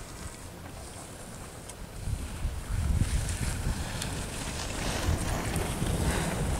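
Wind buffeting the microphone, getting louder about two seconds in, with the scraping hiss of skis carving across groomed snow as the skier comes closer.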